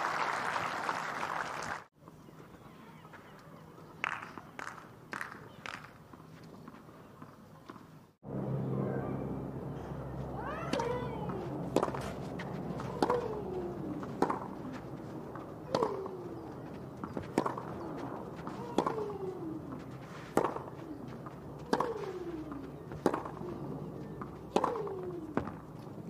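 Tennis crowd applause cut off after about two seconds, then a few ball bounces. About eight seconds in, a baseline rally on clay starts: racket strikes on the ball about every second and a half, many followed by a player's short falling-pitched grunt.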